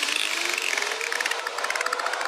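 Psytrance breakdown with the kick and bass cut out: a crackling, hissing synth texture over a slowly rising synth tone.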